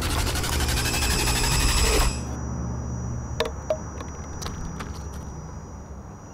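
A loud, dense, fast-pulsing soundtrack sound, music or an effect, cuts off abruptly about two seconds in. It gives way to quieter outdoor background with a steady high whine and a few light clicks and taps.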